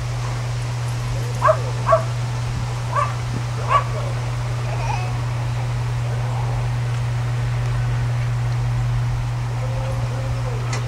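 A dog giving four short yips in the first four seconds, over a steady low hum.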